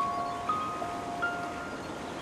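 Background film music of chime-like struck notes. A new note comes in about half a second in and another a little after one second, each ringing and dying away over a soft hiss.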